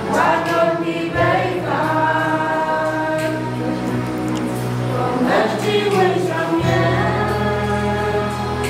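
A group of young voices singing a gospel song together over a steady low bass accompaniment whose note changes twice.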